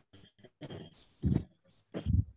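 A few short vocal sounds in separate bursts, the loudest just past a second in.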